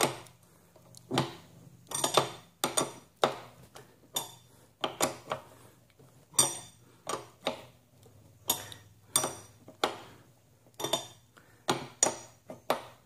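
Steel wrench clinking against an exercise-bike pedal and crank arm as the pedal is turned to thread it on: a string of sharp metallic clinks, irregular, about one or two a second.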